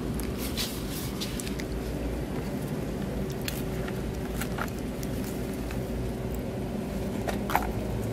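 A fork working through a salad in a plastic bowl: a few light, irregular clicks and soft squishes over a steady low background hum.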